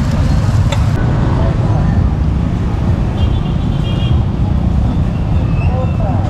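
Steady low rumble of street traffic, with cars and motorbikes on the road and indistinct voices in the background. A short click sounds just before the first second.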